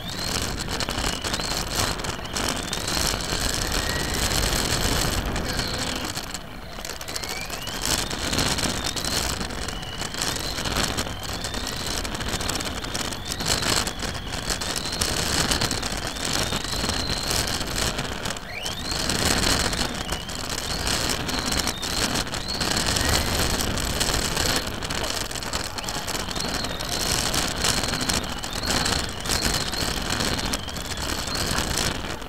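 Radio-controlled racing car heard from a camera mounted on it: a high motor and drivetrain whine that climbs in pitch again and again as the car accelerates, over constant rushing noise from the tyres and the car's movement.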